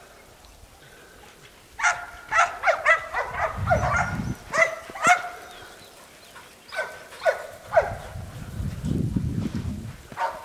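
Australian Shepherds barking in short, sharp yips: a quick run of them starting about two seconds in and lasting about three seconds, then a few more about seven seconds in.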